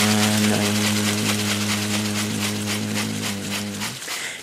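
A man's voice holding the long final note of an icaro, steady in pitch, over a rattle shaken in a steady rhythm. Both fade gradually and stop just before the end.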